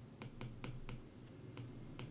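Light, irregular ticks of a stylus tapping a tablet screen while handwriting numbers, about half a dozen in two seconds, over a faint low steady hum.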